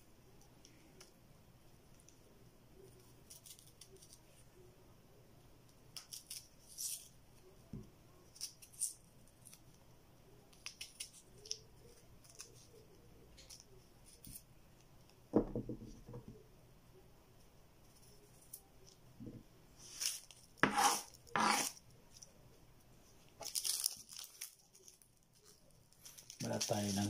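Kitchen knife scraping and paring the skin off fresh ginger root in short, irregular strokes, with a dull knock on the wooden table about fifteen seconds in. Near the end there are louder crackling strokes as the papery skin of a red onion is peeled.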